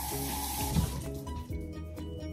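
Water running from a kitchen tap for about a second, then shut off, with a low thump near the middle. Background music plays throughout.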